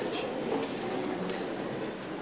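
Audience murmuring in a large hall, with a few sharp clicks scattered through it.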